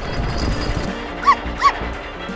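Two short dog barks, a cartoon sound effect, a little over a second in, over background music.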